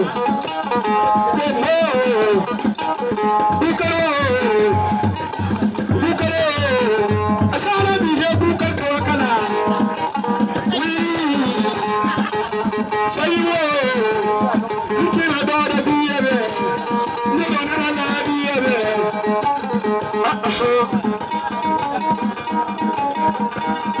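A man singing into a corded microphone, his amplified voice gliding down through long phrases. He is backed by music with a steady shaking rattle and plucked string instruments.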